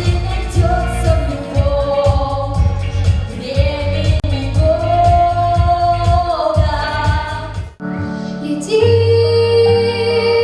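A young woman singing a melody into a microphone over recorded accompaniment with a steady beat. About 8 s in the sound breaks off, and after a short gap a girl's voice starts singing over different, more sustained accompaniment.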